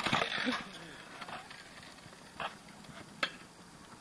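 Quiet outdoor background with a sharp knock right at the start, followed by a few faint, isolated clicks spaced about a second apart.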